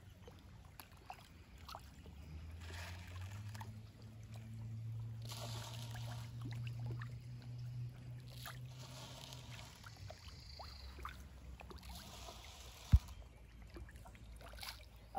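A faint, low engine drone that swells over a couple of seconds, holds, and fades away, over soft splashing of fish rising to food at the pond surface.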